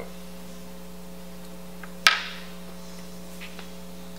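Steady electrical mains hum, with a single sharp click about two seconds in and a couple of faint ticks.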